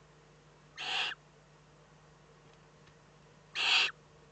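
Eurasian eagle-owl chick giving two short, rasping hisses about a second in and near the end: the begging call of a young eagle-owl in the nest.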